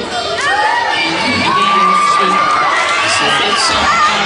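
A crowd of children cheering and shouting, many high voices overlapping in held and rising cries.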